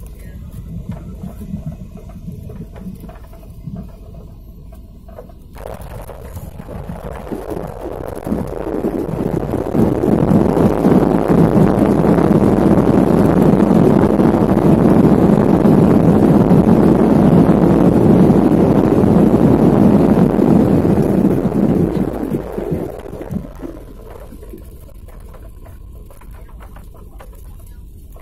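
Airliner jet engines heard from inside the cabin while the plane rolls along the runway, building to a loud rush several seconds in, holding for about twelve seconds, then dying back down to a low hum: typical of reverse thrust slowing the plane after landing.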